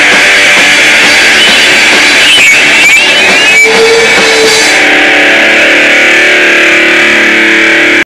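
Punk rock band playing live: loud distorted electric guitars, bass and drums. About five seconds in the cymbals and drum hits drop away and a held chord rings on.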